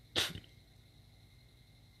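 One short, sharp burst of breath from a man, about a quarter of a second long, just after the start, like a scoff or a sneeze-like exhale. The rest is quiet room tone.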